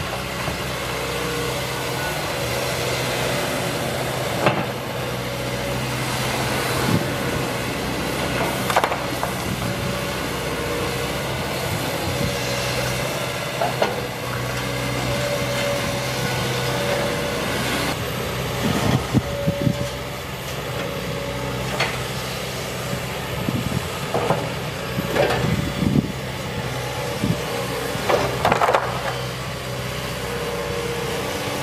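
A JCB tracked excavator's diesel engine running steadily while its demolition grab works, with repeated crashes and clatter of demolition debris, a few at first and then many in quick succession in the second half.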